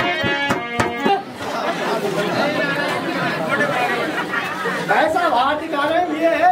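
Live music of held melody notes over tabla beats that stops abruptly about a second in, giving way to the chatter of many people talking at once, with one voice rising above it near the end.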